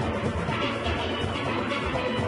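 A steel band playing: many steelpans struck with sticks, a steady, dense mass of ringing pan notes with a driving rhythm underneath.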